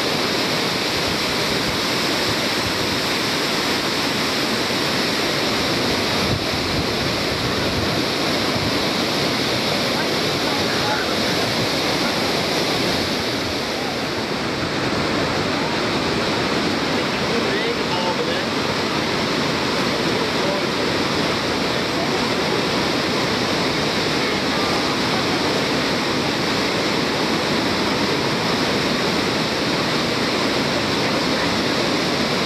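The Devil's Throat (Garganta del Diablo) at Iguazú Falls: a huge volume of water plunging over the falls in a dense, unbroken rush, dipping slightly in level about halfway through.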